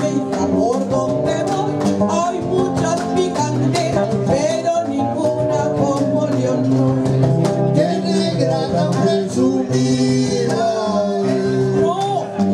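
Live Afro-Peruvian criollo music: two acoustic guitars and a cajón playing a pregón, with sung vocals over the guitars and the steady pulse of the cajón.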